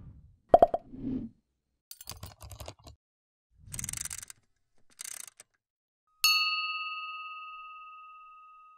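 Sound effects for an animated logo. A few sharp taps and short rushing noises are followed, about six seconds in, by a single bell-like ding that rings out and fades slowly.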